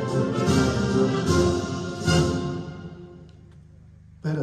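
Orchestral anthem with brass, played while officers hold a salute, reaching its final chord about two seconds in and then dying away.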